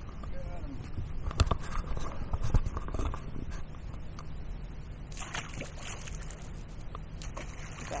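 Catfish dropped from lip grippers splashing into the water beside a boat, with a short splash about five seconds in. Two sharp knocks come in the first few seconds.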